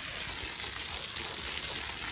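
Garden hose spraying a stream of water onto freshly dug soil, a steady hiss.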